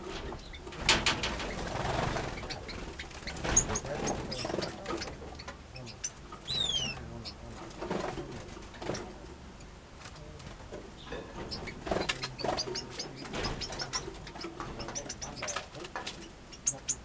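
Aviary finches calling: a scatter of short chirps and tweets, with a clear descending whistled call about six and a half seconds in.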